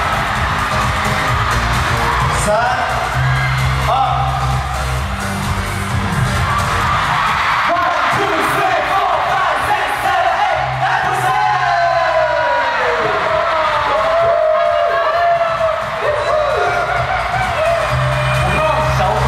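Pop music playing over an arena sound system, with a large crowd of fans cheering and shouting; the crowd's voices grow more prominent in the second half.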